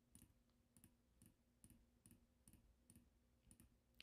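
Faint, quick computer mouse clicks, about two a second in an even run, each click opening another app from the dock.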